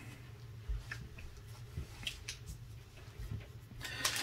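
Faint, scattered taps and slides of trading cards and plastic card holders being handled and set down on a table, over a low steady hum.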